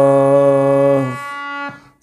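A man sings a long, steady 'Sa' in tune with a harmonium reed note held under it: sargam practice, matching the voice to the swar. The voice stops about a second in, and the harmonium note sounds on alone until it fades near the end.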